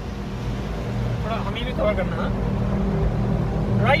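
Suzuki car driving, heard from inside the cabin: a steady low drone of engine and tyres, with faint voices in the background about a second in.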